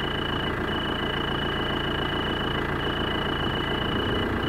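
A car engine idling steadily, with a cricket's continuous high-pitched trill over it that breaks off briefly a couple of times.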